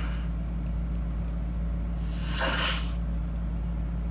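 A steady low hum, with one short breathy whoosh about two and a half seconds in.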